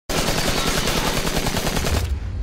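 Sound effect of rapid automatic gunfire, a fast unbroken stream of shots that cuts off suddenly at the end, the shots that punch the bullet-hole logo into a wall.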